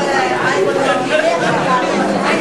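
Crowd chatter: many voices talking over one another at once, steady and continuous.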